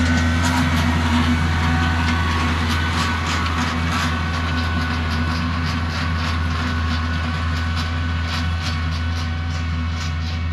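Compact tractor engine running steadily under load while it pulls a box blade with its tines down through the soil. Scattered clicks and rattles sound over it, and the drone fades slowly as the tractor moves away.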